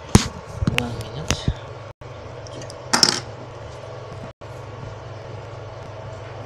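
Handling noise from a phone camera being moved and set down: a few sharp knocks in the first second and a half and a short rustle about three seconds in, over a steady low machine hum.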